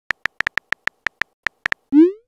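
Texting-app keyboard click sound effect: about a dozen quick, unevenly spaced typing clicks as a message is typed, ending in a short rising swoosh as the message is sent.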